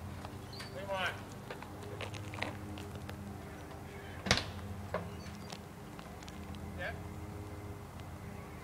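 Faint, indistinct voices close to the microphone over a steady low hum, with one sharp click about four seconds in.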